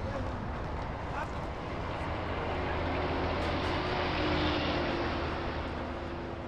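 Motor vehicle engines running, a steady drone with a low hum that swells to its loudest a little past the middle and then eases off.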